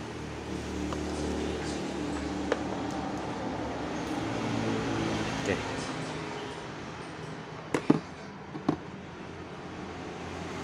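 A few sharp clicks and taps from multimeter test probes and leads being handled, the loudest near the end. They sit over a steady background murmur of voices.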